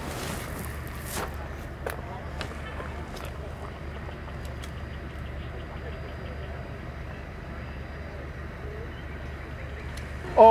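Outdoor background noise: a steady low hum like an idling vehicle engine, with a few sharp clicks and some faint ticking.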